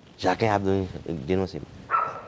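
A man's voice making drawn-out wordless sounds, two stretches wavering in pitch.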